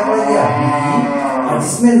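A single long, drawn-out voiced call lasting nearly two seconds, its pitch rising and then falling.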